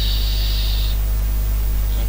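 Steady low electrical hum with a background of static hiss in a pause between words. A short, higher hiss sounds over it during the first second.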